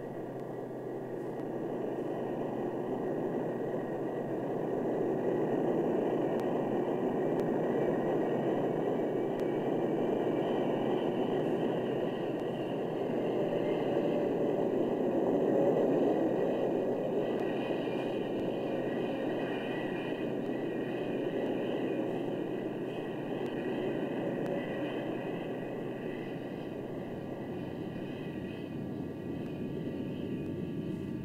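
Grumman F-14A's twin TF30 turbofan jet engines during a landing and rollout: a steady jet roar with a high whine over it, swelling to its loudest about halfway through and then easing off.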